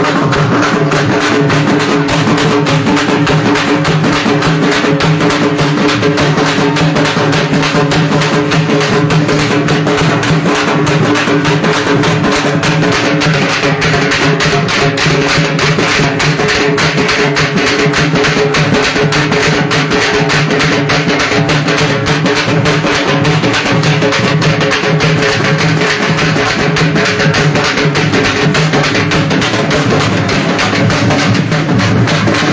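Loud procession music: fast, continuous drumming over a few steady held tones, going on without a break.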